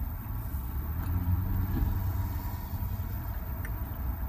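A steady low rumble with a hum, like a running engine or passing road traffic, with no distinct events.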